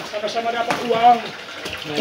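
Water splashing and running as fish are washed, with people talking in the background.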